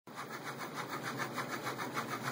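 Stepper motors of a mUVe 1 resin 3D printer driving its X and Y axes back and forth at high speed, in an even rhythm of about ten pulses a second.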